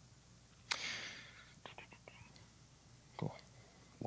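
A breath-like hiss into the microphone a little under a second in, then a few faint clicks and a short soft knock near the end, over the quiet tone of a large room.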